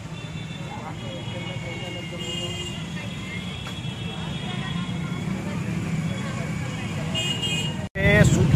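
Outdoor roadside ambience: a steady traffic rumble with faint background voices and a few thin, horn-like tones.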